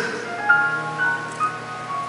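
Soft live instrumental accompaniment: a few single notes sound one after another and are held, a slow, quiet melodic line.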